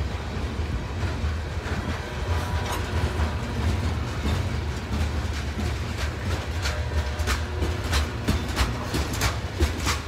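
Freight train covered hopper cars rolling past close by: a steady low rumble of steel wheels on rail. From about halfway through, sharp clicks of wheels passing over rail joints come more and more often.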